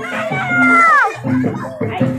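Barongan procession music with a steady pulse of low drum and gong notes. Over it a high, drawn-out wailing note slides down and breaks off about a second in.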